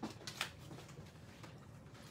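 Two light clicks about half a second apart as small craft supplies are handled, then faint room tone.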